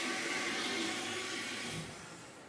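Toilet flushing in a washroom stall, a steady rush of water that cuts off near the end.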